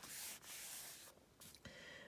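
Faint papery rustle of a book's page being handled and turned: one rustle through the first second and a shorter one near the end.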